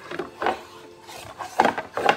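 Small hands knocking and rubbing on a plastic high-chair tray and plate while picking up rice: a few light knocks about half a second in and a louder cluster near the end.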